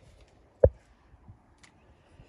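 A single short, low thump a little over half a second in.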